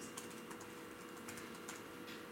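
Faint computer keyboard typing: scattered soft clicks over a low steady room hum.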